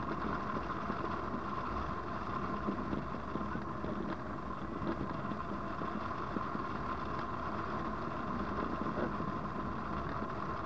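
Steady rush of airflow buffeting the microphone of a camera mounted on a hang glider in flight, an even rumbling noise with a faint steady hum in it.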